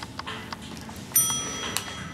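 A bright bell chime strikes about a second in and rings on for most of a second, with a few small clicks before it; it is an added notification-style sound effect.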